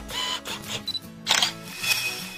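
Camera sound effects over background music: a few short high autofocus beeps, then two sharp shutter clicks, the louder about a second and a quarter in and another just before the end.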